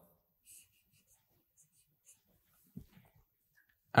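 Near silence with a few faint strokes of a marker on a whiteboard, and a brief soft low sound about three seconds in.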